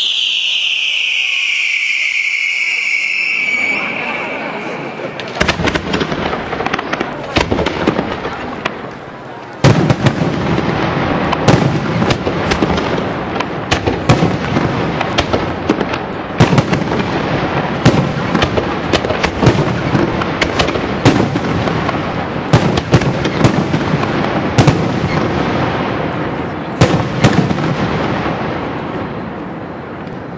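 Fireworks display: a high whistle falls in pitch over the first few seconds, then a dense, irregular run of sharp bangs over continuous crackling fills the rest, dying away near the end.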